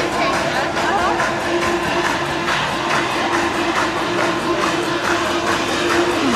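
Background music with one long held note, over the chatter of a dense crowd.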